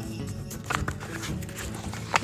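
Background music bed playing steadily and quietly, with a few light percussive ticks about half a second in.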